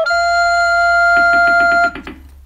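Recorder holding one long, steady note at the close of the cheer-song intro phrase, cutting off just before the end. About a second in, a quick pulse of short, lower accompaniment notes starts underneath, about eight a second, over a low steady hum.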